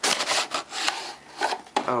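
Cardboard scraping and rubbing as the inner cardboard box of an SSD retail package slides out of its printed outer box. The loudest scrape comes at the start, and a few shorter rubs and rustles follow.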